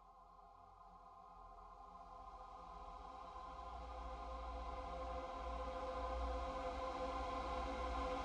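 Electronic synthpop music: a synthesizer pad holding one sustained chord, swelling steadily louder, with a low bass drone building underneath.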